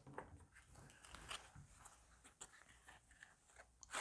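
Faint, scattered clicks and rustles of tarot cards being handled: cards picked from a deck held in the hands and slid against one another.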